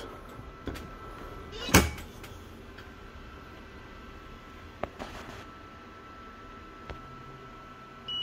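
A faint steady hum with a single knock about two seconds in and a few light clicks later, while a heat press rests closed on a hoodie.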